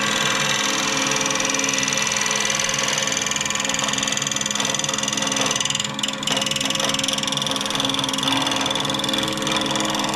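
Wood lathe running with a small bowl spinning, a gouge cutting the wood in a steady hiss over the lathe motor's hum, with a brief break in the cut about six seconds in.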